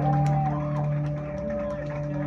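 A steady droning low note held through the amplifiers, with higher ringing tones above it and a few faint clicks: an electric guitar left sustaining between songs.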